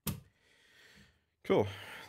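A single sharp click, then a faint breath out.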